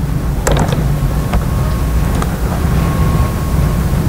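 Steady low background rumble with a few light knocks in the first half and a faint high steady hum.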